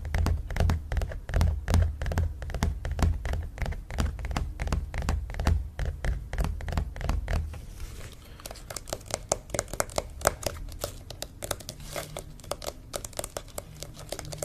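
Fingers tapping rapidly on a stretched canvas print close to the microphone, each tap with a deep thump from the taut canvas. About eight seconds in, the thumps drop away and the tapping turns lighter and sharper.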